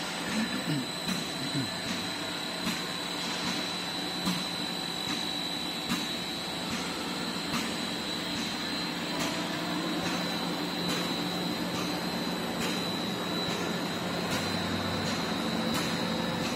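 EDW-15 bead mill and its two pumps running on test: a steady machine hum with a constant high whine, and a light click that comes back about every one and a half to two seconds.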